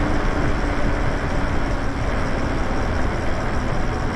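Wind buffeting the microphone and road noise from a Lyric Graffiti electric bike riding on pavement, with a faint steady hum that fades out about three seconds in.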